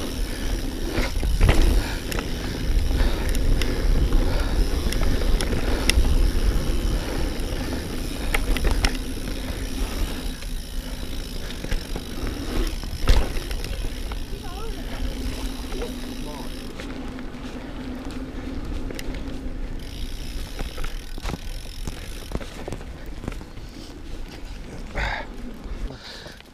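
Mountain bike riding over a dirt and gravel trail: tyre roll noise with a steady low rumble, and a few sharp knocks from bumps, the loudest about thirteen seconds in.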